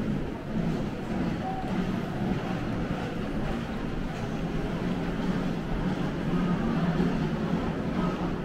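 Steady rumble of suitcase wheels rolling over a hard stone floor.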